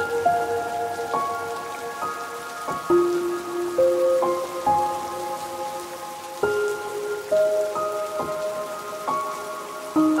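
Steady rain falling, with a slow, soft ambient melody over it: single ringing notes, a new one every second or so, each held and slowly fading.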